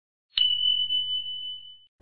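A single high, pure bell-like ding sound effect. It strikes sharply about a third of a second in and rings on one steady pitch, fading away over about a second and a half.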